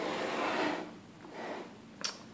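A MakiBox A6 3D printer's clear plastic case being slid and turned around on a tabletop, a soft scraping rush followed by a second, shorter one just after a second in.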